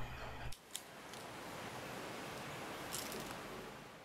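Faint handling of a compact camera in the hands: a couple of small clicks over a low, steady hiss.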